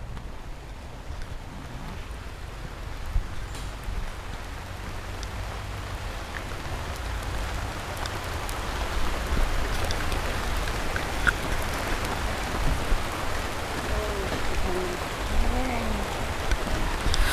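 Rain falling in a steady, even hiss that grows slowly louder.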